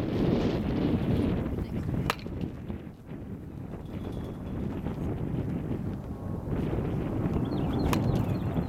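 Baseball bat striking a ball: two sharp cracks, one about two seconds in and one at the very end as the batter swings, over steady wind noise on the microphone.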